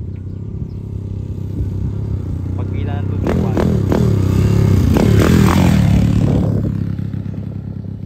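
Honda XRM 125 single-cylinder four-stroke motorcycle, freshly built with a four-valve head and on its break-in ride, being ridden on gravel toward and past close by. The engine note swells and shifts in pitch to a peak about five seconds in, then fades as it moves away.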